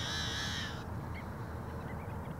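Male yellow-headed blackbird singing one harsh, buzzing note that cuts off abruptly a little under a second in, over a low steady rumble.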